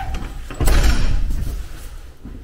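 A metal door latch clunks as its long lever handle is thrown, about half a second in, with a clatter that dies away over about a second.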